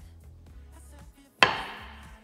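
A large kitchen knife chopping through a sausage and striking a wooden cutting board once, a sharp knock a little past halfway, over steady background music.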